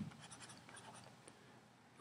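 Faint scratching and light ticks of a stylus writing by hand on a tablet, trailing off near the end.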